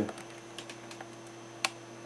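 A few light clicks, the loudest a single sharp click about one and a half seconds in, over a steady electrical hum.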